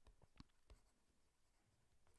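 Near silence with a few faint ticks in the first second, a stylus tapping on a tablet as words are handwritten.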